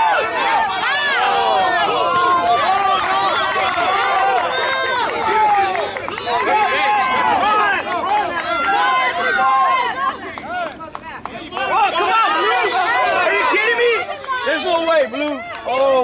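Spectators shouting and cheering excitedly over one another during a live baseball play. The voices are loud and high-pitched, in continuous overlapping calls that ease briefly partway through before rising again.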